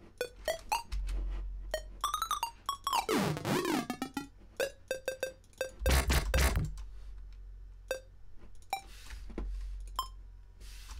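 Software synthesizer playing short separate notes at different pitches, with a pitch sweep sliding downward a little over three seconds in and a loud deep bass note just before the middle of the second half.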